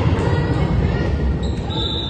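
A volleyball bouncing on a gym's hardwood floor amid chatter in a large hall, then a referee's whistle blown for about a second near the end, signalling the serve or point.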